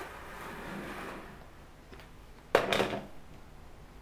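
Rotary cutter rolling through several folded layers of cotton sheet along a metal straight edge, a faint scraping hiss for about a second. About two and a half seconds in, one sharp clatter as the cutter is set down on the glass cutting board.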